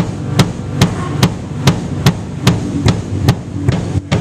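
Rock band's drum kit hitting a steady beat, about two and a half hits a second, over low sustained guitar and bass notes. The hits are loud enough to overload the recording.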